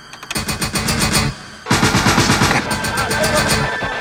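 Action-film score with a rapid, driving percussive pulse, loud and dense, dipping briefly just after a second in before coming back stronger.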